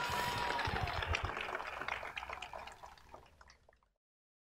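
Audience applause, a dense patter of claps that fades away around three seconds in.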